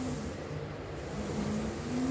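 A steady low mechanical hum, its pitch sagging slightly in the middle and rising again near the end.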